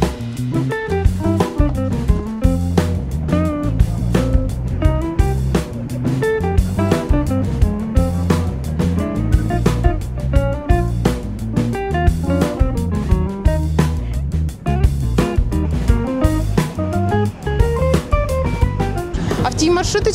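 Background music: an instrumental jazz-style track with guitar, a stepping bass line and drums keeping a steady beat.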